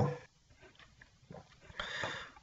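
A pause in a man's narration: his voice trails off at the start, then near silence, broken near the end by a faint short noise just before he speaks again.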